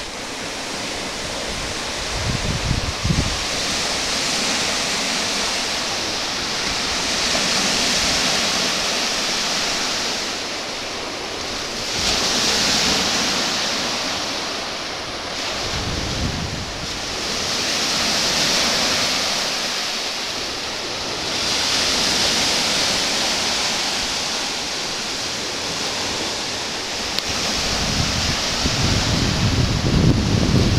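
Baltic Sea surf washing onto a sandy beach, swelling and ebbing every four to five seconds. Wind buffets the microphone in low rumbling gusts a few seconds in, midway and near the end.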